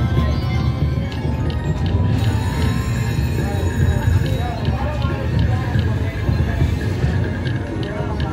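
Aruze Jie Jie Gao Sheng video slot machine's free-games bonus music playing loudly as the reels spin one free game after another, with short clicks about every half second, over the din of the casino floor.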